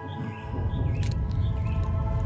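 Cartoon background music of sustained chords, with a low rumble that swells in about half a second in and faint short chirping notes above.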